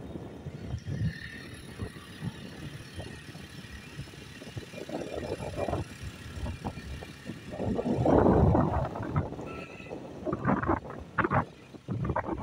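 A moving vehicle heard from on board: engine and road noise with irregular knocks and rattles, rising to a louder rush for about a second around eight seconds in.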